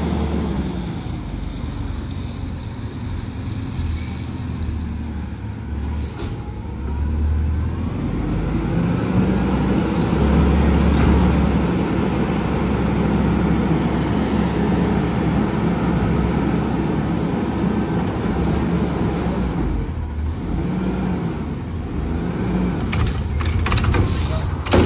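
Diesel Autocar ACX garbage truck with a Heil front-loader body running as it pulls up. Its engine then revs up, louder for several seconds mid-way, to drive the hydraulics as the Curotto-Can arm lifts the can over the cab and empties it into the hopper. A few sharp clunks come near the end as the can is lowered back in front.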